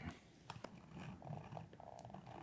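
Small steel hand tool scraping and rasping along the edge of a piece of leather, with a few light clicks of metal against the glass work surface.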